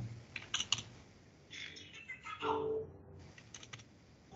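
Computer keyboard keystrokes: a few quick key clicks shortly after the start and another short cluster near the end, as a dimension value is typed into the CAD program.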